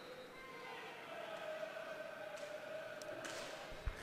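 Faint roller hockey arena ambience: distant voices from the stands and rink, with a low thump near the end.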